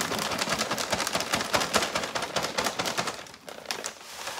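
Potting soil poured from a plastic bag, pattering and rattling densely into a clear plastic tote onto a layer of white granules, with the bag crinkling. The pour thins out about three and a half seconds in.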